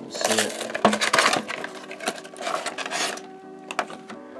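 Cardboard and plastic packaging of a HeroClix booster pack crinkling and tearing as it is opened, with sharp clicks of plastic miniature bases knocking together and being set down on a table, a few more clicks near the end.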